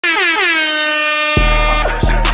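An air horn sound effect at the head of a hip-hop track: its pitch drops slightly and then holds. It cuts off just over a second in, as the beat drops with deep bass and drums.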